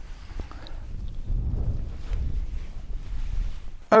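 Wind buffeting the microphone: a low rumble that swells in a gust about a second in and eases off near the end.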